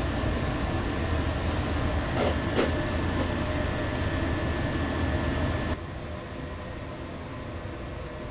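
Steady low machine hum with a faint held whine, like a kitchen fan, and two soft knocks a little after two seconds in. Near the end the hum drops abruptly to a quieter hiss.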